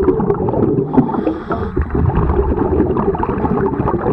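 Dense underwater bubbling and crackling, heard through an underwater camera housing beneath a boat's hull.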